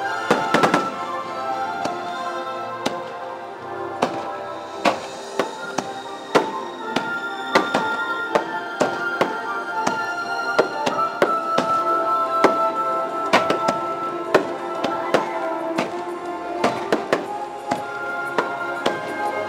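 Fireworks shells bursting over a show's music soundtrack. A cluster of loud bangs comes about half a second in, then single bursts follow every second or so over the sustained music.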